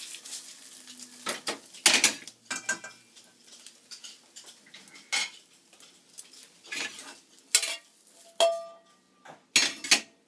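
Chopsticks scraping and knocking against a small frying pan, with the pan clattering on the gas stove's burner grate in irregular knocks. A short ringing clink comes near the end.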